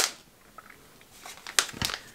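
A folded paper leaflet being handled, rustling and crinkling in a few short, sharp crackles in the second half, with a soft thump just before the end.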